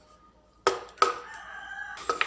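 Two sharp clicks a little over half a second in, then a single drawn-out animal call lasting about a second.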